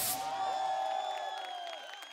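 The song's final band hit cuts off right at the start, leaving cheering with many overlapping high-pitched whoops and screams.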